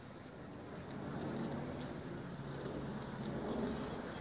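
Birds calling outdoors, short high chirps scattered throughout, over a steady low hum and an even background rush.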